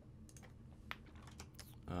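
About half a dozen soft, scattered computer keyboard key clicks, the sharpest about a second in: keys pressed to switch between open application windows.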